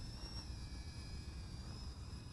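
Faint high whine of a micro FPV quadcopter's brushless motors and five-blade props in flight, wavering slightly in pitch, over a low rumble.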